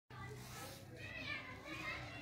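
Faint distant voices in the background over a low steady hum.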